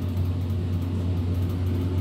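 A steady low hum that holds level throughout, with no other clear sound.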